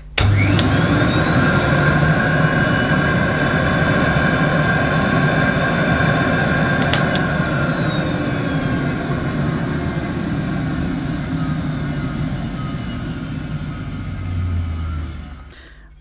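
Electrolux Model 60 cylinder vacuum cleaner's 300-watt motor switching on with a rising whine as it spins up, then running steadily while pulling against a suction gauge. A brief click comes about seven seconds in, and the sound drops away shortly before the end. The motor sounds quiet and smooth.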